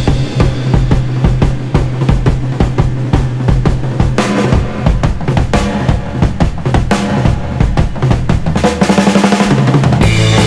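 Rock music driven by a busy drum kit, with rapid kick and snare hits over a steady low bass note that shifts near the end.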